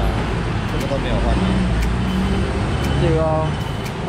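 Steady road traffic noise with a continuous low rumble, under men's voices talking; a short stretch of speech comes about three seconds in.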